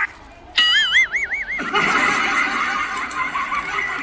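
A high, wavering, whinny-like call about half a second in, its pitch rising and falling several times over about a second, followed by a denser stretch of sound with music under it.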